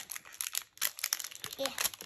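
Crinkling of a small plastic toy wrapper being handled and opened by hand, in quick irregular crackles.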